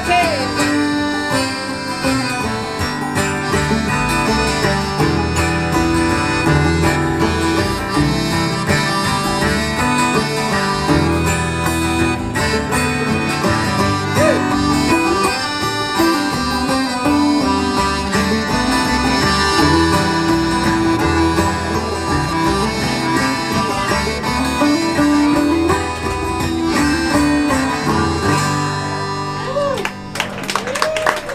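Live acoustic string band playing an instrumental break with no singing: banjo, acoustic guitar, accordion and upright bass in a bluegrass-folk style, running steadily throughout.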